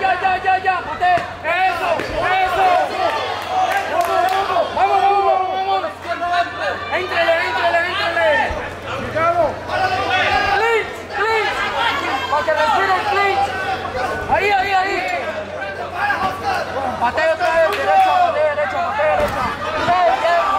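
Several people talking and shouting at once, their voices overlapping throughout, over a low steady hum.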